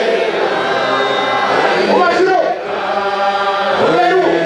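A congregation chanting a hymn together, many voices holding long notes, with one voice swooping up and down about halfway through.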